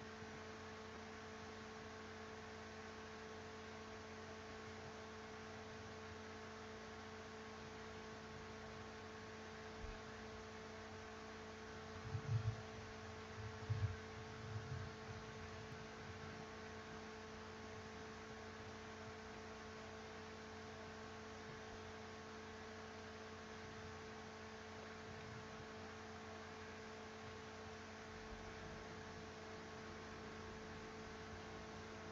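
Steady electrical hum with several fixed tones over faint hiss, with a few soft low thumps about halfway through.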